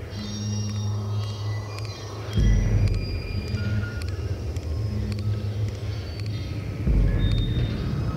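Minimal synth music: held low synth bass notes, with a louder, deeper bass note coming in twice, about a third of the way in and again near the end. Short high synth bleeps and faint ticks are scattered over the top.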